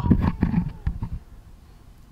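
A pause in conversation: the tail of a spoken word, a faint low murmur, then quiet room tone for the last second.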